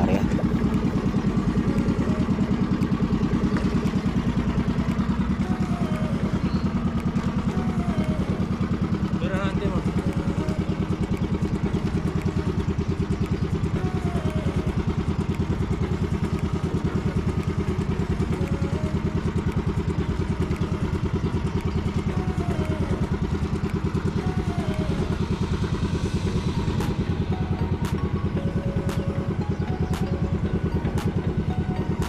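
A boat's engine running steadily at an even speed.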